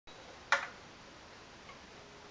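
A single sharp click about half a second in, then faint room tone before any playing begins.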